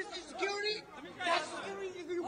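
Faint, muffled chatter of several men's voices from a video clip played back over a speaker.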